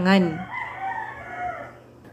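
A rooster crowing: one long crow, quieter than the voice around it.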